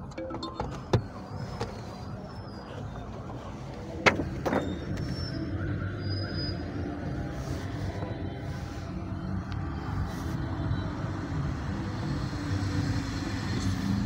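A car's steady low engine rumble with faint music, broken by a few sharp knocks, the loudest about four seconds in.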